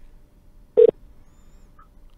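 A single short, loud telephone beep about three-quarters of a second in, heard over a phone line.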